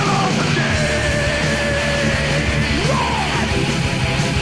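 Loud punk rock music with distorted guitars and drums, and a long held note that starts about half a second in and bends away near the three-second mark.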